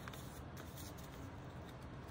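Faint rustling of a sheet of origami paper being folded and tucked by hand.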